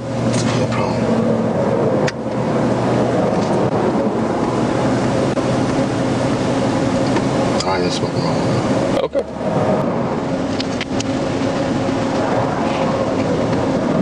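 Steady roadside noise of passing highway traffic with the low hum of an idling vehicle engine.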